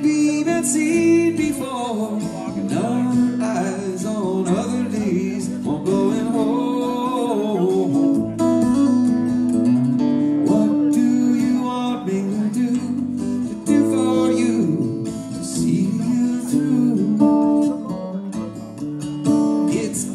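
Live solo electric guitar playing a song, held chords underneath a bending melodic line.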